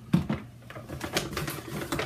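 Plastic toiletry bottles being handled on a tabletop: a sharp knock as one is set down just after the start, then a run of light clicks and taps as others are moved.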